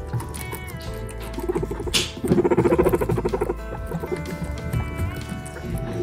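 Guinea pig making a rapid, pulsing call for about two seconds around the middle, over background music with long held tones. A sharp crack comes just before the call.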